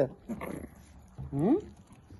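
Small dog whining, with a short rising whine about one and a half seconds in, as it reaches for a piece of cucumber held out by hand.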